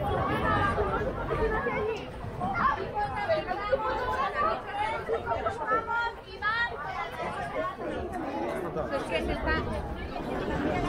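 Chatter: several people talking at once in an outdoor crowd, with no words clear.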